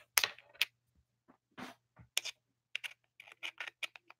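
Typing on a computer keyboard: a run of irregular key taps and clicks.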